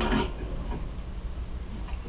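Faint, scattered small ticks from fly-tying tools and thread being handled at the vise as a half-hitch is thrown, over a steady low hum.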